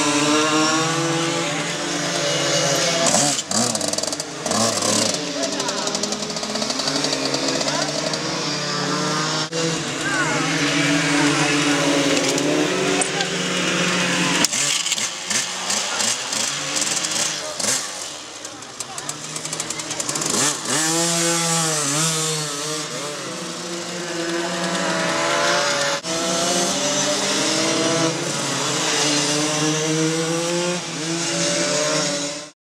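Small mini motorcycle engines running, holding steady at idle and revving up and down.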